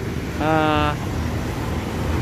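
Steady low outdoor rumble, with a man's drawn-out hesitation sound "uh" about half a second in.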